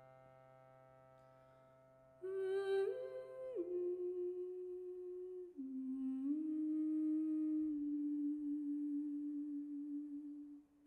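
A sustained chord from the ensemble fades away, and about two seconds in a woman's voice enters alone, humming or singing wordlessly in a few slow, long held notes that step up once, then down, then settle on a long final note.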